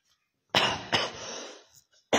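A man coughing twice in quick succession, starting about half a second in.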